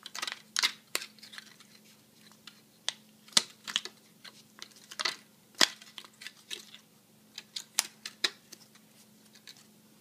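Stiff plastic bottle strips being bent and curled by hand around a wooden chopstick: irregular crinkles and sharp clicks of thick plastic. A few louder snaps come about three and a half and five and a half seconds in.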